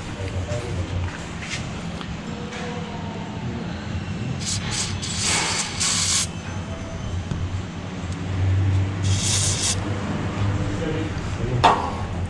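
Aerosol can of white lithium grease spraying through its straw onto rubber suspension bushings: three hissing bursts, the longest about a second, over a low steady hum.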